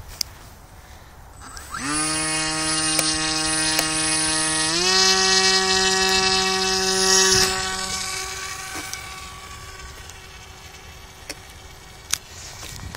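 Smart Fly Junior model airplane's motor and propeller spinning up with a steady whine about two seconds in, stepping up to a higher pitch a few seconds later as it takes off, then fading as the plane flies away.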